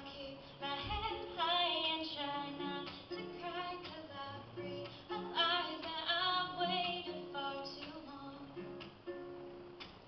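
A woman singing, accompanied by her own acoustic guitar.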